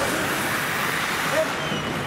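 Indoor ice hockey rink during play: a steady wash of rink noise with scattered distant voices and calls.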